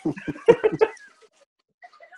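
A person laughing: a quick run of short, clipped laugh pulses through the first second, dying away to faint breathy traces.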